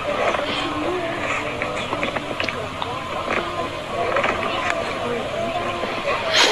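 An indistinct voice over steady background noise, with scattered short clicks.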